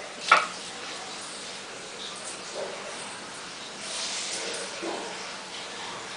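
A pet dog gnawing at something held between its front paws, with faint scattered chewing and rustling sounds. One short, sharp sound about a third of a second in is the loudest thing heard.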